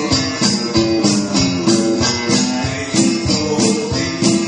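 Live upbeat song in the style of a Mexican country tune: strummed acoustic guitar with keyboard backing and a steady shaken-percussion beat.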